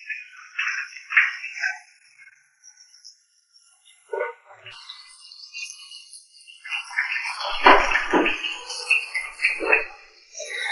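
Stir-frying in a wok: sizzling with the scrape and clatter of a metal spatula against the pan, loudest and busiest in the last three seconds after a quiet stretch in the middle.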